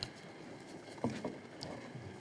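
Low room tone with a few faint, short clicks and knocks, the clearest of them about a second in.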